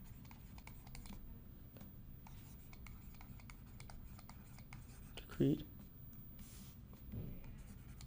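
Quiet scratching and light ticking of a stylus writing on a tablet, stroke by stroke. A short voice sound cuts in about five seconds in, and a softer one near the end.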